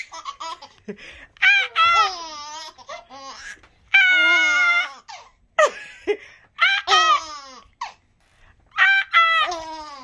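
A baby laughing in a run of about six high-pitched bursts, each lasting up to about a second, with short breaks between them.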